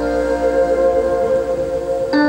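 Slow keyboard music: a long held chord, its middle note shifting slightly about half a second in.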